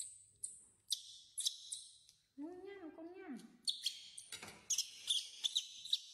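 A newborn monkey screaming in repeated high-pitched, shrill squeals, broken by a lower wavering call about two and a half seconds in. This is a baby's distress crying, typical of an infant demanding to nurse.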